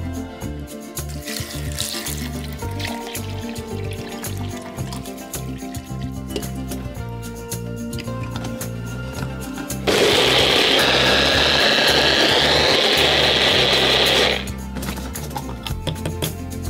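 Personal blender running once for about four and a half seconds, its blades chopping bay leaves in water into a purée, with a high whine over the motor noise; it starts and stops abruptly, over background music.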